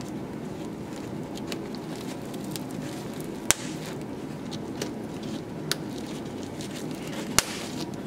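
Metal snap fasteners on a Graco FitFold stroller seat pad being pressed shut: two sharp clicks about four seconds apart, with a few fainter clicks and fabric and strap handling between.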